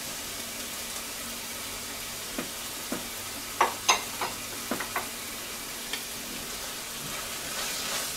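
Chopped tomatoes and onions sizzling steadily in a stainless steel frying pan, with a scatter of sharp clicks in the middle. A spatula starts stirring the mixture near the end.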